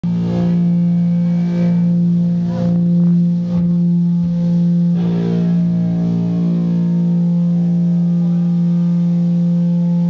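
Loud sustained electric guitar drone through stage amplifiers: one low note held steadily while the higher notes above it change a few times, building before the band starts playing.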